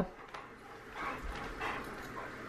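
A dog rummaging in blankets on a bed: faint rustling of the bedding in two short bursts, about a second in and again a little later.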